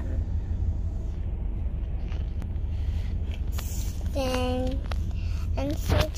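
Steady low rumble of a car's interior as it moves through traffic. A child's voice gives one drawn-out syllable about four seconds in.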